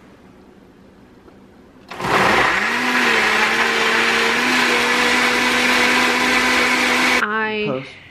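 Countertop blender switched on about two seconds in, its motor spinning up and then running steadily at full speed as it blends fruit into a smoothie. Near the end it is switched off and winds down quickly with a falling pitch.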